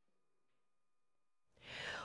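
Near silence for most of the time, then near the end a newsreader's soft intake of breath just before speaking.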